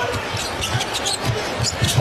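Basketball dribbled on a hardwood court: a run of quick bounces, with a few short high squeaks.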